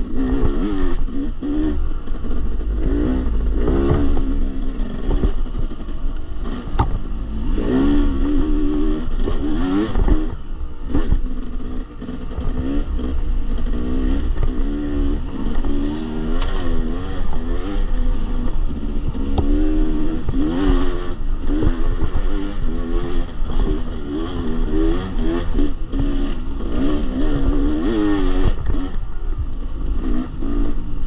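Yamaha YZ250X two-stroke single-cylinder engine revving up and down continually with the throttle as the bike rides a rough dirt trail, easing off briefly about twelve seconds in. Clattering from the bike over the rough ground is mixed in.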